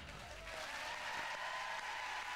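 A music cue from a TV broadcast ends about half a second in, and studio audience applause follows.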